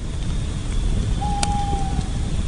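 Sound effect over a logo card: a loud, deep rumble, with a short steady mid-pitched tone and a click a little over a second in.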